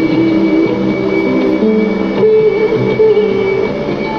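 Music from AIR Vividh Bharati's 810 kHz medium-wave broadcast, received at long range and heard through a Sony ICF-5900W radio's speaker. A steady high whistle and background hiss run under the music.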